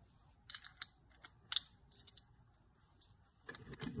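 Hard plastic parts of a smartphone bow mount clicking and tapping as they are handled and fitted together, with a quick run of sharp clicks in the first two seconds and a few more later.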